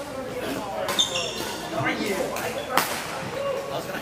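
Badminton rackets striking shuttlecocks in a gym: a few sharp cracks, the loudest about three-quarters of the way through, with brief high shoe squeaks on the court floor and people's voices around.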